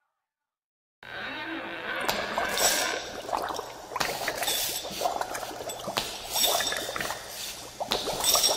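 About a second of dead silence between tracks, then the next track opens with irregular clinks and liquid, pouring-like sound effects.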